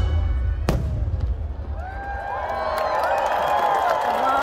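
Fireworks show: the music and low rumble fade, one sharp firework bang comes about a second in, then a crowd starts cheering.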